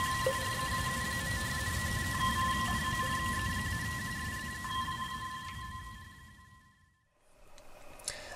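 Sonar-ping sound effect played through a homemade Arduino prop's small speakers. A tone returns about every two seconds over a low rumble, with a fast electronic pulsing. It fades out about six seconds in, ending the machine's sound-effect sequence.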